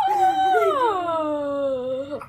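A girl's long, drawn-out wailing cry, held for about two seconds and sliding steadily down in pitch, as whipped cream is smashed into her face.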